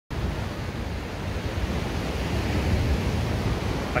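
Sea surf washing steadily onto a sandy beach, with wind buffeting the microphone in a low, gusty rumble.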